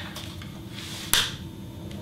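A single sharp click about a second in, from the controls of a studio flash head being worked by hand, over faint room tone.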